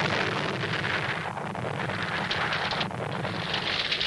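Cartoon avalanche sound effect: a loud, steady rushing crash of a heap of objects tumbling down, starting suddenly.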